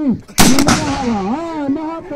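A single loud gunshot from a locally made gun about half a second in, its report echoing and dying away over about a second. A man's voice is heard just before the shot and over its tail.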